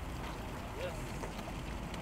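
Farm tractor hauling a large dump trailer at low speed, its engine a steady low rumble, with some wind on the microphone.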